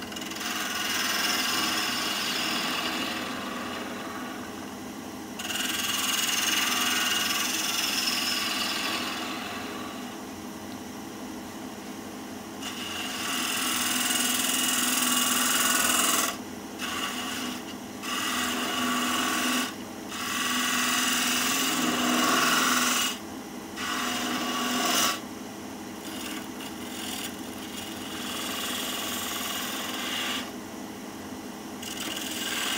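Wood lathe running with a steady hum while a detail gouge cuts a spinning maple blank. The cutting hiss comes in repeated passes of a few seconds each, with pauses between them, and the passes grow shorter and choppier in the second half.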